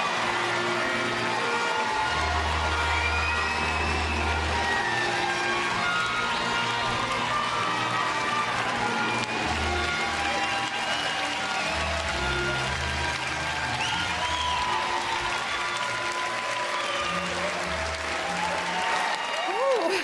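Audience applauding steadily over walk-on music with a held bass line, greeting a presenter coming onto the stage.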